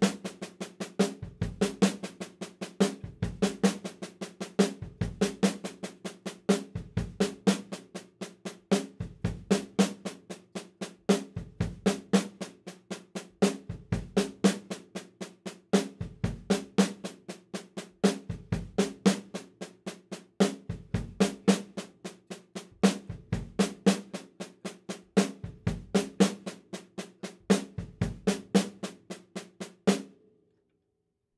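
A drum kit playing a repeated sixteenth-note-triplet fill: two quick bass drum strokes, a right-hand snare accent, then a left-hand six-stroke roll on the snare. The pattern repeats about every two seconds and stops suddenly at the end.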